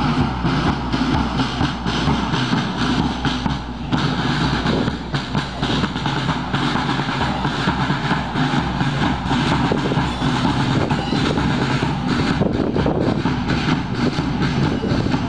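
School marching band, brass and drums, playing as it marches.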